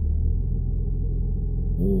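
Porsche Macan GTS twin-turbo V6 idling, heard from inside the cabin. A third of a second in, the low, smooth rumble changes to a faster pulsing beat, as Sport Plus mode engages and opens the switchable sports exhaust.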